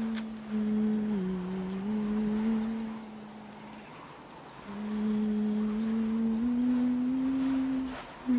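A voice humming a slow, wordless tune in long held notes that dip and step back up in pitch, pausing midway and then climbing a little higher.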